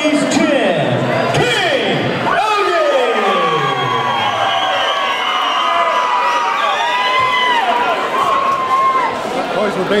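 Boxing crowd cheering and shouting for a fighter's ring introduction, with long drawn-out calls held over the noise for several seconds from a few seconds in.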